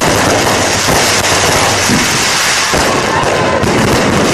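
Consumer fireworks going off: a dense, continuous crackle of bursting stars and sparks, with a few sharper pops standing out.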